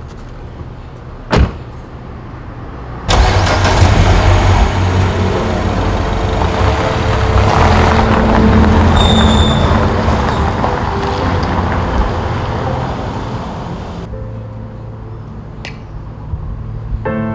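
A car door shuts once, then about three seconds in the car's engine starts suddenly and the car drives off, the engine and tyre noise fading gradually as it goes.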